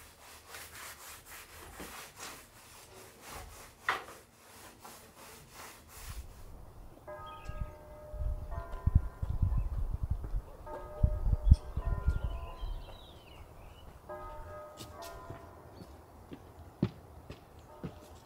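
A stain brush scrubbing back and forth over a rough hand-hewn pine ceiling beam, a quick steady rub of bristles on wood, for about the first six seconds. Then it cuts to outdoors: a few sustained chords of soft background music, a low rumble of wind on the microphone, and a few sharp footsteps near the end.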